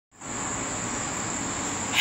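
A steady high-pitched tone over an even background hiss.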